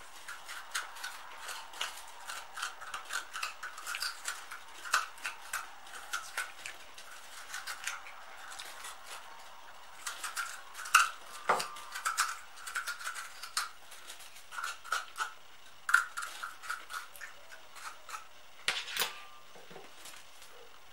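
A knife scraping and gouging the firm white flesh out of a black radish in short repeated strokes, two or three a second, with a pause partway and a few sharper knocks.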